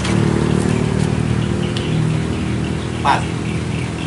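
A truck engine idling with a steady, even low hum.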